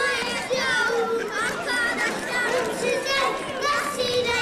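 Many children's voices at once, overlapping and continuous.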